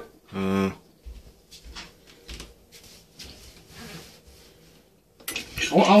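A brief low-pitched hum about half a second in, then faint trickling and swirling water in an electronic toilet's bowl.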